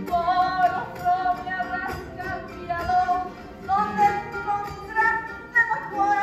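A woman singing a melody of long held notes, accompanied by a strummed acoustic guitar and a charango.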